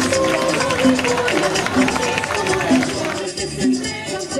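School marching band playing in the street: drums with a steady beat just under once a second under a held melody line.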